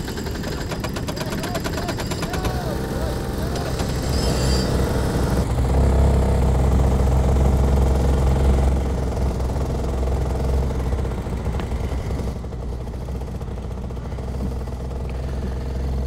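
Several 125cc go-kart engines running in the pit lane after start-up. They grow louder about six seconds in as the karts pull away, then ease off.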